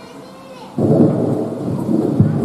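Microphone handling noise: about a second in, a sudden loud, rough rumbling starts as the lectern's gooseneck microphone is gripped and bent by hand.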